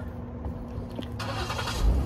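A car engine running, a steady low hum and rumble, with a wider rush of noise building about a second in.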